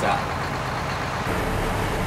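Steady low rumble of a heavy truck's engine running. About halfway through it changes to a steadier hum with a faint held tone.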